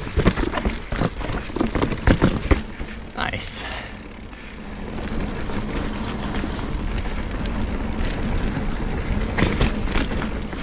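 Mountain bike clattering over a rock garden: rapid knocks and rattles from the tyres, suspension and chain, with a brief wavering high-pitched sound about three seconds in. From about halfway on it settles into steadier rolling tyre and wind noise.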